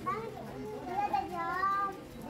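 Young children's voices chattering, high and rising and falling in pitch, with no clear words.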